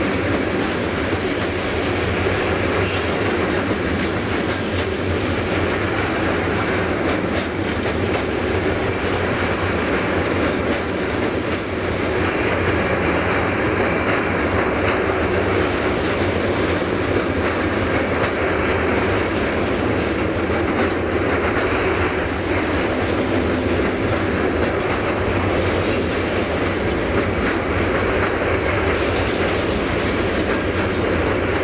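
A freight train of four-axle Tadns hopper wagons rolling past close by: a steady rumble of steel wheels on rail. A few short, high squeals from the wheels come through, near the start and several more in the second half.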